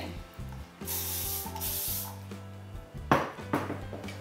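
A short hiss of aerosol hairspray, lasting just under a second about a second in, over background music with a steady bass line. Two sharp knocks or rustles come near the end.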